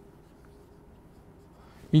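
Faint scratching of a marker writing on a whiteboard. A man starts speaking right at the end.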